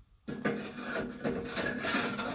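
Wallace Forge steel gooseneck-to-kingpin adapter sliding up into a trailer's gooseneck coupler tube: a sustained metal-on-metal scrape with a faint ring, starting a moment in.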